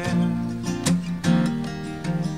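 Live acoustic guitar strumming chords between sung lines, with several sharp strums through the two seconds.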